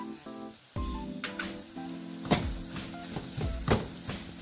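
Background music plays over a stir-fry in a wok, with faint sizzling and several sharp knocks and scrapes of a wooden spatula against the pan as it is mixed. The loudest knocks come a little past two seconds in and near the end.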